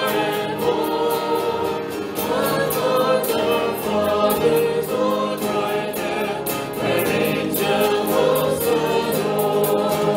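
Several voices singing a hymn to acoustic guitar accompaniment, with no break in the music.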